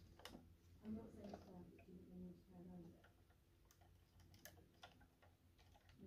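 Faint scattered clicks and taps of a 1:18 scale diecast model car being handled and turned over by hand.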